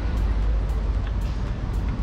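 Steady low rumble of street and traffic noise, with faint background music ticking out a steady beat about twice a second.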